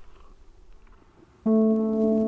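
Background music that starts suddenly about one and a half seconds in, after a quiet moment: a chord of steady, ringing tones that holds on.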